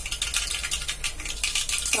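Mustard seeds crackling and spitting in hot oil in a steel pan: a dense, quick run of small sharp pops, the start of a tempering.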